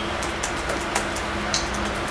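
A pause in speech filled with a steady low hum and hiss of background room noise, with a few faint clicks.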